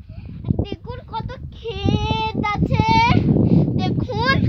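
A young child's high-pitched voice, talking in short bursts and then drawing out two long, wavering notes about two and three seconds in.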